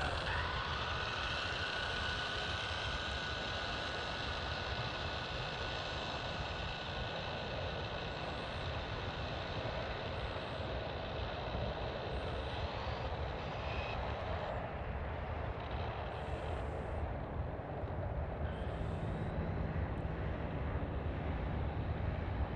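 Steady outdoor rumble of wind on the microphone. A faint high whine fades out over the first several seconds.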